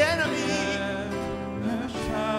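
Live worship band playing: strummed acoustic guitar and keyboard with a voice singing a drawn-out, wavering line near the start.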